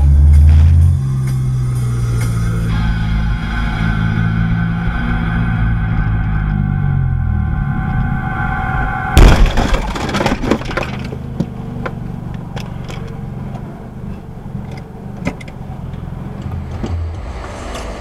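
Car horn held steadily for about six seconds, cut off by a sudden loud crash of a collision, with scattered knocks after it, over road and engine noise heard from inside a car.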